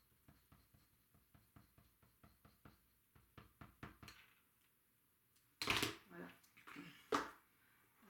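Faint, rapid clicking and crackling as a squeeze bottle of craft glue is run along a narrow paper strip, stopping about halfway through. Then a louder rustle and a sharp knock as the glue bottle is put down on the cutting mat and the strip is handled.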